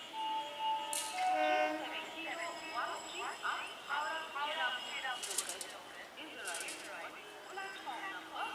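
People's voices and chatter around a suburban railway station's tracks, with a few short steady tones in the first two seconds. No train rumble stands out.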